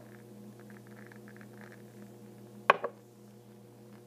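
A glass jar candle set down on a hard surface: one sharp clunk with a brief ring nearly three seconds in, followed quickly by a smaller knock.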